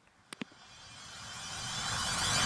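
Two short clicks, then a rushing whoosh that swells steadily louder for about a second and a half: the rising intro of a rap diss-track music video, building towards the beat.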